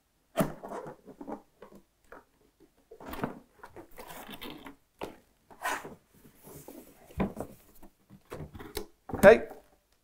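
Cardboard and foam packaging being handled: a box sliding and knocking against its carton, with polystyrene end caps and a soft plastic-foam wrap rustling and scraping, in scattered short knocks and rustles.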